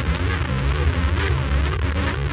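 Live rock band playing, with an electric bass guitar's low notes changing under drums and cymbals.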